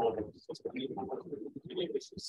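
Faint, indistinct speech from a person talking away from the microphone, asking a question that the recogniser could not make out.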